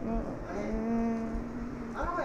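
A boy's voice holding a long hesitant "mmm" at one steady pitch for about a second and a half, after a short sound at the start.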